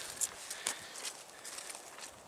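Footsteps through dry fallen leaves: a soft rustle with a few sharp crackles.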